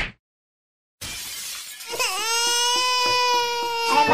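Cartoon sound effects: a short sharp hit at the start, then a glassy crash about a second in, followed by a long, steady, high-pitched wailing note.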